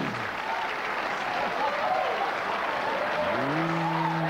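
Studio audience applauding and cheering, with scattered whoops. Near the end a man's voice holds a long "ooh" over the applause.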